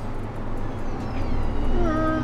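John Deere 8370R tractor with an IVT transmission accelerating to full speed, heard inside the cab: a steady low engine drone with a little high whine, the "spaceship sound", thin tones gliding down in pitch and steady whining tones coming in near the end.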